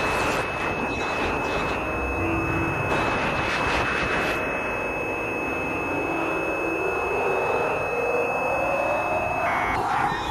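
Experimental electronic noise music: a dense rushing noise wash with a thin, steady high sine tone held over it, which cuts out near the end, while a lower tone glides slowly upward in pitch through the second half.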